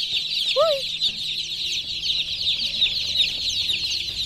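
A crowd of newly hatched chicks peeping together in a packed cage: a dense, unbroken chorus of high, short cheeps.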